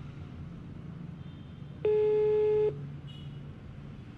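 A mobile phone's ringback tone while a call is placed: one steady, buzzy beep lasting just under a second, about halfway through, over a low steady hum.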